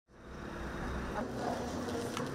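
Steady background ambience with a low rumble, fading in from silence at the very start, with a faint knock about a second in.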